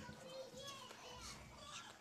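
Faint chatter of a young child's voice, high-pitched and broken into short bits.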